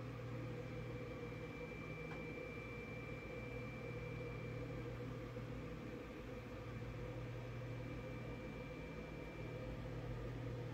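Steady low hum of a small appliance motor or fan running, with a faint high-pitched whine over it.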